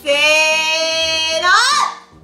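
A long, sing-song Japanese count-in 'seee-no' called out by voice: the 'seee' is held steady for about a second and a half, then the pitch slides up on 'no' before it breaks off.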